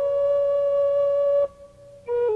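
Solo flute holding one long, steady note that stops about one and a half seconds in.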